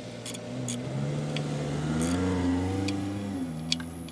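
A car engine running nearby, rising in pitch and loudness to a peak about halfway through and then easing off, as a car revs or drives past. A few separate metallic clicks from a ratchet tightening the oil strainer cover nuts under an air-cooled VW Beetle are heard over it.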